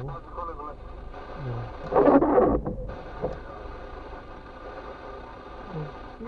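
Far-end voice of a phone call played over the car's speakers, thin and muffled, with a loud outburst about two seconds in.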